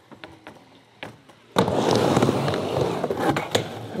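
A skateboard dropping in on a halfpipe: about one and a half seconds in, the wheels come down onto the ramp with a sudden loud onset, then roll on with a steady rumble across the ramp surface.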